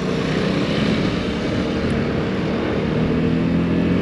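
Vespa GTS300 scooter's single-cylinder engine running steadily while riding along, under a steady rush of wind and road noise.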